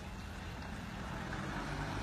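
A motor vehicle approaching on a wet road, its engine hum and tyre hiss slowly growing louder.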